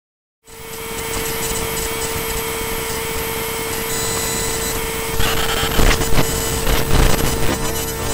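Raw electrical noise from a computer's sound card output as the computer shuts itself down: it cuts in abruptly as a dense hiss with a steady held tone and thin high whines, then breaks into irregular crackles and pops about five seconds in.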